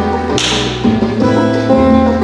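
Music for the dance: plucked string melody over a stepping bass line, with a short, noisy percussion stroke about half a second in that fades quickly.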